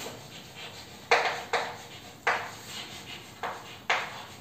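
Chalk on a blackboard while words are written: about five sharp taps and scrapes, each fading quickly.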